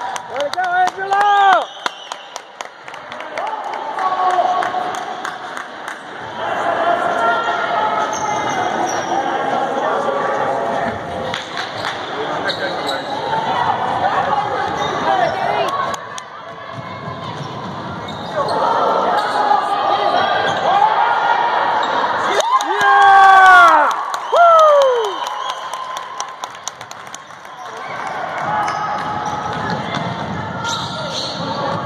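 A basketball being dribbled on a hardwood gym floor in an echoing gym, with spectators talking and calling out. About three quarters of the way in comes the loudest stretch, a few sharp gliding squeals.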